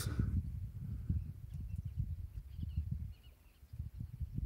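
Wind buffeting the microphone in an open landscape: an uneven low rumble with faint bird chirps in the middle.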